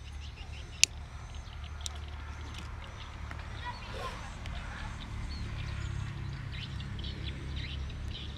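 Faint outdoor ambience: small birds chirping on and off over a steady low hum, with one sharp click about a second in.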